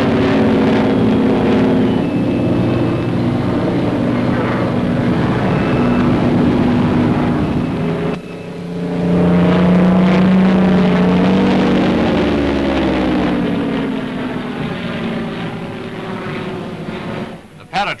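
Propeller aircraft engines running low overhead with a steady drone. About eight seconds in the sound cuts to another pass, its pitch rising and falling as the aircraft goes by, then fading.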